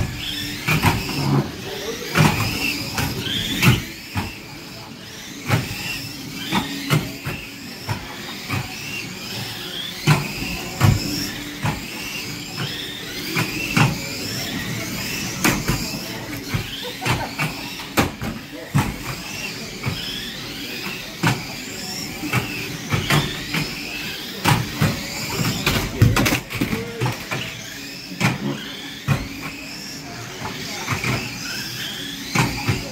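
Small radio-controlled stock cars racing: their electric motors whine, rising in pitch again and again as they accelerate, with frequent sharp knocks from cars hitting each other and the track barriers.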